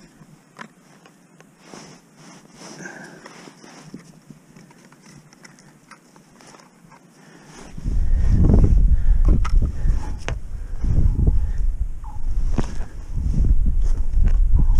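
Faint clicks and rustles of gloved hands handling an ice-fishing tip-up. Then, about eight seconds in, wind suddenly starts buffeting the microphone in loud, low, gusting rumbles that drown everything else.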